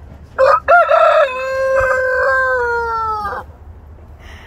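A rooster crowing once: two short opening notes, then a long held final note that dips slightly in pitch as it ends, about three seconds in all.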